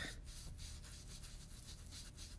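Foam ink-blending tool rubbed back and forth over textured cardstock in short repeated strokes, a faint brushing, as oxide ink is blended out on the card.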